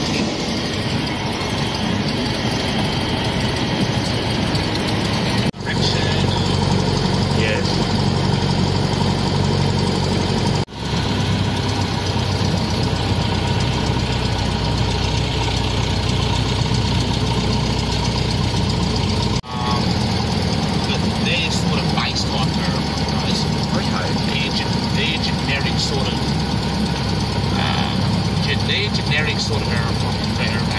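Light aircraft's piston engine and propeller running at low, steady taxiing power, heard from inside the cabin. The sound drops out briefly three times.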